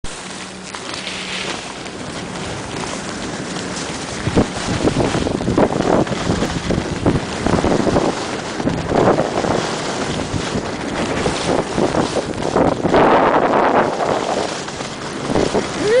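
Wind rushing over the microphone of a camera carried by a moving skier, with the hiss and scrape of skis on snow swelling with each turn, about once a second from a few seconds in.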